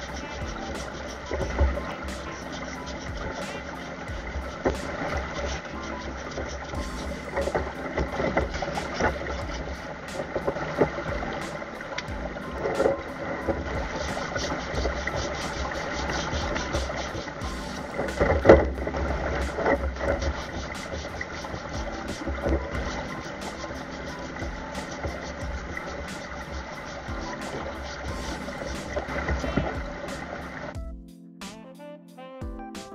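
Water rushing through a steel sluice hopper, with stones knocking and scraping on the grate and steel walls as they are worked with a metal hook: many sharp knocks, the loudest about two-thirds of the way in. Under it runs the steady sound of a pump engine.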